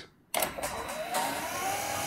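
Electric garage door opener motor starting suddenly about a third of a second in, its pitch rising as it comes up to speed and then running steadily as the door begins to open. It was set off by shorting the opener's trigger terminals with two bare wires.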